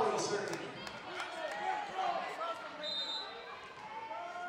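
Gym crowd and players calling out between rallies in a volleyball game, scattered voices echoing in the hall, with a short referee's whistle about three seconds in signalling the next serve.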